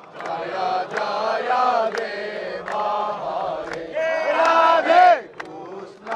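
A group of devotees chanting a Krishna kirtan, the sung line rising and falling and swelling to a long held note that falls away about five seconds in. Sharp claps cut in now and then.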